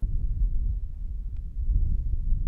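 Wind buffeting an outdoor microphone: a steady low rumble.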